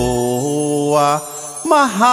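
Slow Thai song: a singer holds a long note over the backing music. The note fades out about a second in, and the next sung line begins near the end.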